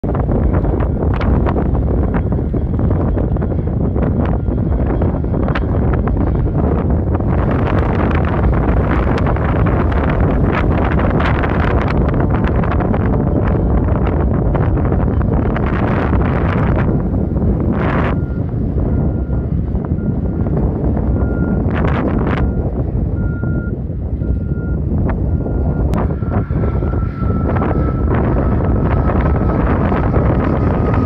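Heavy wind buffeting the microphone over the steady drone of a small propeller airplane flying past. Through the second half, a faint beep repeats about once a second.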